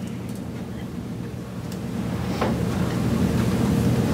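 Low, steady rumble of lecture-hall room noise that grows slightly louder toward the end, with a faint knock about two and a half seconds in.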